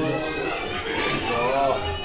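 Children's voices chattering in a gathering during a pause in a man's Quran recitation over a microphone; the recitation's long held note cuts off at the very start.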